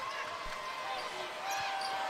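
A basketball being dribbled on a hardwood court over a steady arena crowd murmur, heard faintly beneath the broadcast.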